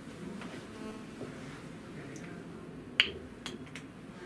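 Marker pen writing on a whiteboard. About three seconds in comes one sharp click, followed by a few lighter clicks, as the marker is capped.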